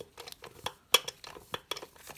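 Scattered light metallic clicks and clinks of a socket and extension working a bolt into place, with two sharper clicks in the middle.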